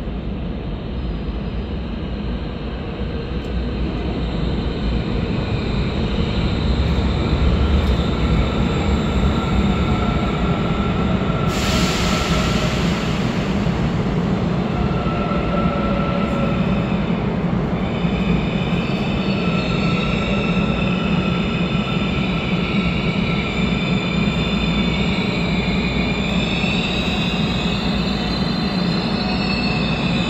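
Korail Class 351000 electric train pulling into an underground station behind platform screen doors. Its rumble builds over the first several seconds, a brief hiss comes about twelve seconds in, and high squealing tones follow from about eighteen seconds as it slows to a stop.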